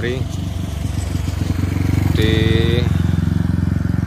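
Motorcycle engine running steadily, a low pulsing drone that grows a little louder about two seconds in.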